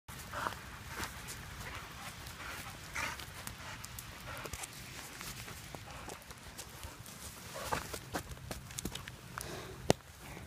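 A puppy making a few short high whines or yips among scattered clicks and taps. One sharp click just before the end is the loudest sound.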